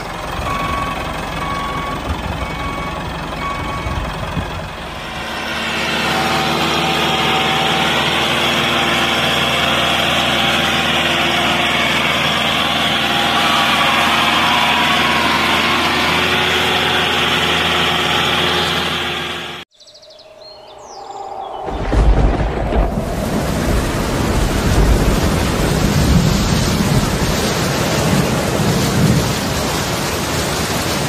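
Miniature tractor engine running steadily, its sound getting louder and noisier about five seconds in. It cuts off abruptly about two-thirds of the way through, and a steady rushing noise with a low rumble follows.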